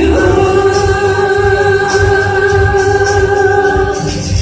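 Female pop singer holding one long, steady sung note through a microphone and PA, over backing music with a low pulsing beat.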